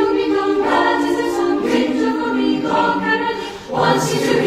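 Choral music: a choir holding sustained chords that change about once a second, with a short break just before the end.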